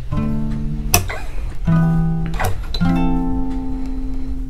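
Steel-string acoustic guitar: three chords, each strummed down once and left to ring, the last one ringing on to the end. A sharp click comes just before the second and third chords.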